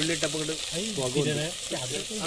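Sliced onions sizzling steadily in hot fat in an aluminium pot over a wood fire. A person's wordless voice sounds over the frying.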